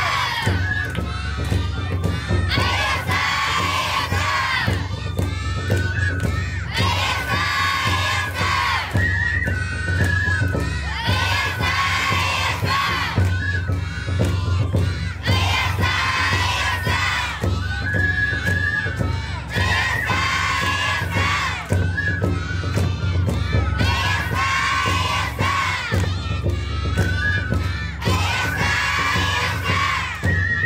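A group of young children shouting lion-dance calls together in bursts about every two seconds, with a melody of short held notes, like a flute, running between the shouts.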